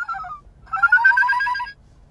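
A young woman making a high, warbling, trilled cry with her voice, like a wild Pokémon's call. There are two calls: the first falls away about half a second in, and the second, rising slightly, stops shortly before the end.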